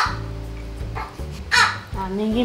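A baby crying off-camera in two short wails, one right at the start and one about a second and a half later, over background music.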